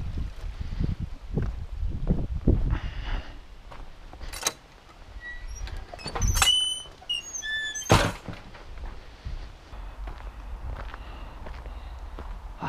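Footsteps on a stony path, then a wooden field gate is worked: a metal latch clacks, the hinges give short high squeals, and the gate knocks shut about eight seconds in.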